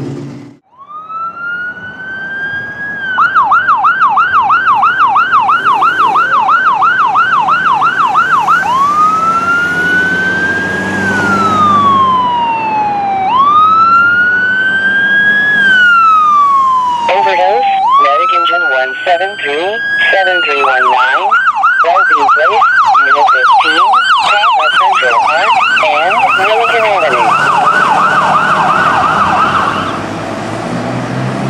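Ambulance electronic siren winding up, then running a fast yelp of about three rises and falls a second. It switches to a slow wail that rises and falls over a few seconds, and a lower wavering tone briefly overlaps before the siren returns to the yelp for the rest of the time.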